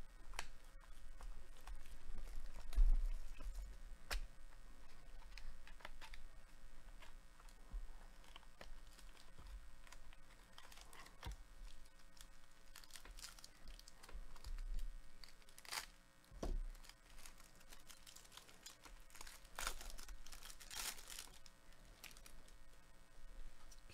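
Clear plastic card sleeve crinkling and rustling as gloved hands slide trading cards out of it, with scattered light clicks and taps, busiest near the end.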